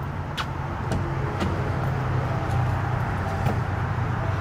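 Ford Mustang convertible's engine idling with a steady low hum that slowly grows louder. A few short sharp clicks of boot footsteps on concrete sound over it.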